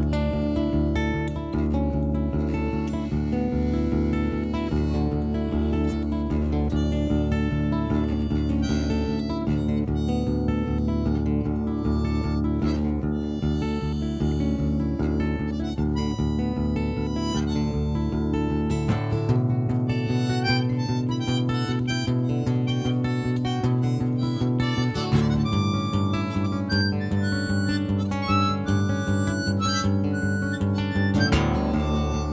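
Harmonica played into a microphone, taking an instrumental solo over acoustic guitar accompaniment, with no vocals. The guitar's low pattern changes about two-thirds of the way through.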